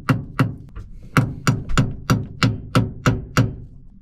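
Hammer blows on a rusty bolt in a metal propeller-shaft coupling, driving the bolt out: about ten sharp strikes at roughly three a second, each ringing briefly, with a short pause after the second.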